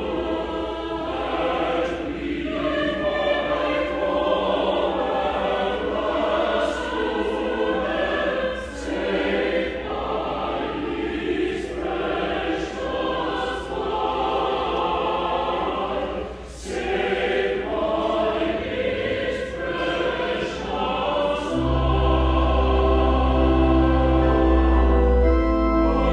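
Church choir singing a sacred choral work, the voices moving through shifting chords with sharp 's' sounds at phrase edges. Near the end a held low chord from the organ enters under the voices and swells.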